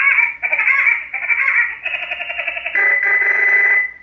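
Incoming call sound number 1 from a caller box installed in a Stryker SR-955HP CB radio: a run of warbling electronic tones in short segments that change about every half second to a second, ending on a held high tone that cuts off just before the end.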